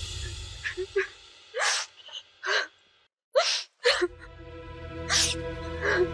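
Drama serial background score: the music fades, then comes a string of short, sharp noise-hit sound effects about once a second, a brief moment of silence, and sustained dramatic music tones swelling back in after about four seconds.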